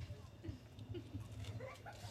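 Low bumps from a handheld stage microphone being passed from one hand to another, with faint short rising-and-falling squeaks in the background that grow more frequent near the end.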